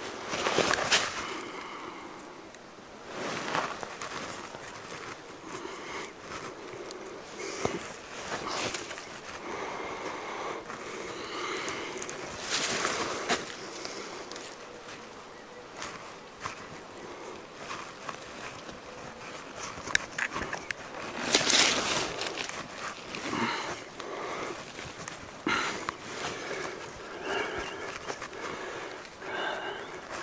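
Intermittent rustling and scuffing of footsteps and clothing in dry leaf litter and brush at the foot of a tree, with scattered short scrapes.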